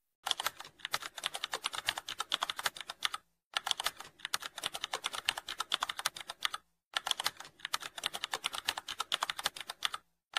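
Computer keyboard typing sound effect: rapid keystroke clicks in three long runs, with brief pauses about three and a half and seven seconds in. The typing sound plays along with on-screen text being typed out.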